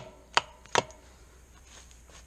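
Claw hammer driving a steel fence staple into the base of a wooden post: three quick strikes about 0.4 s apart in the first second. The staple is left standing proud so the brace wire can be threaded through it.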